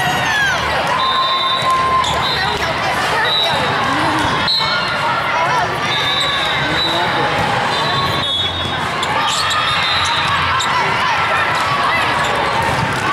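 Busy indoor volleyball hall din: balls being struck and bouncing, with sharp hits about four and eight seconds in, over players' and spectators' voices. Short high-pitched squeaks come and go throughout.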